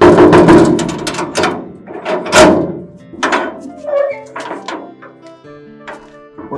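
A fist knocking and banging repeatedly on a door in irregular groups of loud knocks, the hardest about two and a half seconds in, over background music.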